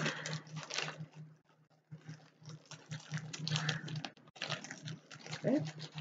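Plastic packaging crinkling and rustling in irregular bursts as a rolled canvas and its bag are handled, over a low steady hum.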